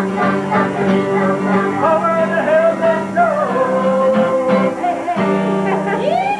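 Live amateur holiday song: a man sings lead over a Guild D40C acoustic guitar and an electric guitar, with relatives singing along. A long note is held in the middle.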